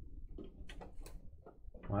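Irregular light clicks and knocks of a trading card and plastic card holders being handled, from a card being forced into a holder it doesn't want to fit.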